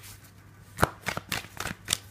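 Tarot cards being hand-shuffled: after a quiet start, a run of about six quick sharp card clicks and slaps, the loudest a little under a second in.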